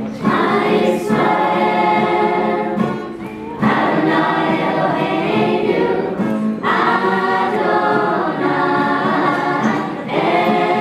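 A small mixed choir of men's and women's voices singing together, with short breaks between phrases about three and a half and six and a half seconds in.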